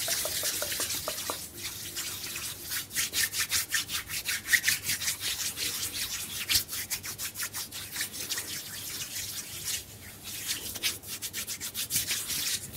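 Bare palms rubbed together fast and hard: a rapid, dry swishing of skin on skin, many quick strokes a second, easing briefly near the end before picking up again.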